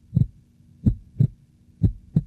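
Heartbeat sound effect: low thuds in lub-dub pairs, about one beat a second, over a faint steady hum.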